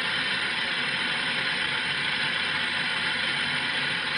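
Car FM radio tuned to 89.5 MHz giving a steady hiss of static: the distant sporadic-E signal has faded into the noise.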